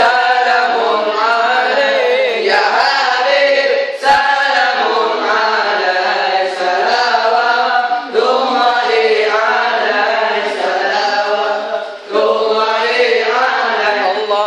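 Acehnese seulaweut group of young male voices chanting a devotional Arabic salawat song in unison, in phrases of about four seconds with a short break between each.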